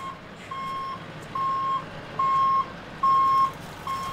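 A lorry's reversing alarm beeping as the truck backs up: one steady single-pitched tone, about five beeps evenly spaced a little under a second apart.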